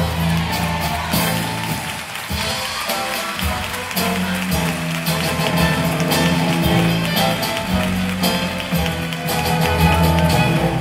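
Orchestra with strings and guitar playing the accompaniment of a copla song, with scattered sharp percussive taps.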